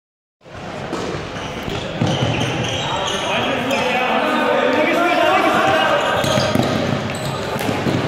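Players' voices shouting and calling across an indoor sports hall, with footsteps and short thuds on the court floor.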